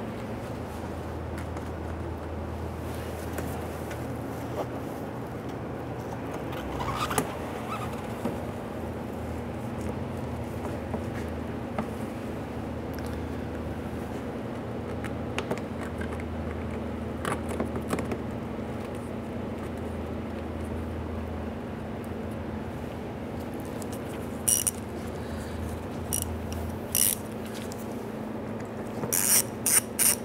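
Screws being threaded by hand into metal retaining clips on a plastic splash shield, giving a few scattered light clicks and scrapes over a steady low hum. Near the end a ratchet starts clicking rapidly as the screws are snugged down.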